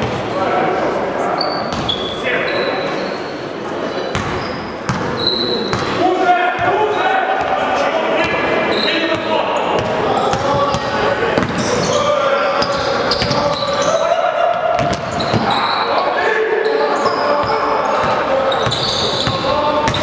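A basketball being dribbled on a gym floor, with short impacts, over the voices of players and spectators, all echoing in a large sports hall.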